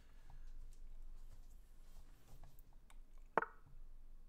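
One short, sharp click about three and a half seconds in: the lichess move sound as the opponent's move lands on the board. Under it there is faint low room hum and a few soft clicks.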